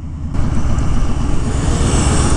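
2020 Honda Fury's V-twin engine running steadily while the motorcycle is under way, with a hiss of wind noise that comes in shortly after the start.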